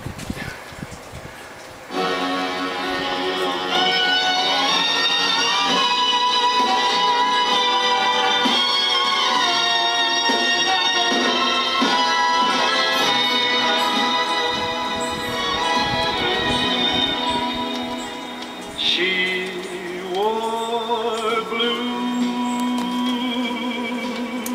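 A vinyl record playing music on a Soundesign 6848 stereo's turntable, heard through only one of its speakers. The first two seconds are quieter, then the music comes in and plays on steadily.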